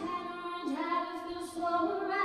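A woman sings live into a microphone with acoustic guitar accompaniment. She holds long notes and slides up in pitch a little under a second in.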